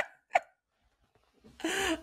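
A woman's laughter dying away: a last short laugh burst about a third of a second in, a pause, then a breathy intake near the end.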